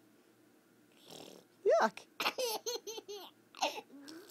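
A toddler's belly laughter: a run of short, high-pitched bursts lasting about a second and a half, starting about halfway through.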